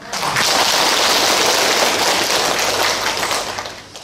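A large audience applauding, steady for a few seconds and dying away near the end.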